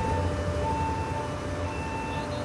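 Shipboard main air compressor running with a steady low hum, while an alarm sounds a repeating high-low two-tone pattern about once a second: the discharge air high-temperature alarm tripping as the thermoswitch's sensing bulb is heated.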